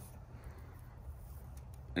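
Faint steady outdoor background noise with a low rumble, and no distinct sound event.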